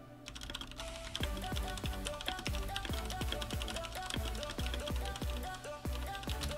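Background electronic music: a steady run of short notes, each dropping sharply in pitch, over a fast patter of light clicks.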